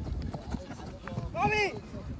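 Running footsteps on artificial turf, with a man's short shout about three-quarters of the way through.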